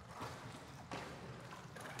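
Faint water sloshing and lapping from a swimmer sculling along the surface of a swimming pool, swelling briefly twice.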